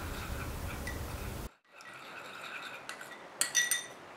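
Metal spoon stirring cornstarch and water into a slurry in a ceramic bowl, clinking against the bowl, with a quick run of ringing clinks near the end.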